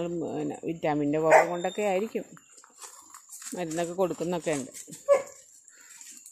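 A dog barking a few times, short loud barks, with a person talking.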